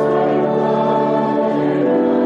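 A hymn sung by a congregation to church organ accompaniment, the organ holding steady sustained chords. The chord changes about one and a half seconds in.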